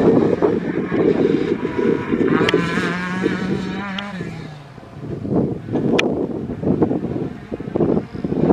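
A Honda Civic hatchback rally car's four-cylinder engine working hard at high revs as it passes on a gravel stage, with rough tyre and gravel noise. The engine note falls away about four seconds in, and gusts of wind on the microphone take over.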